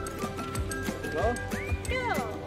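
Background music with a horse whinnying over it in the second half, its pitch rising and falling.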